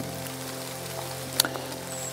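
Steady rain falling in a forest, under soft sustained background music. A single sharp click sounds about one and a half seconds in.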